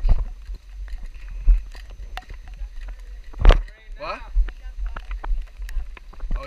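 Low rumble with several sharp knocks and clatter, the loudest about three and a half seconds in; faint distant voices call out just after it.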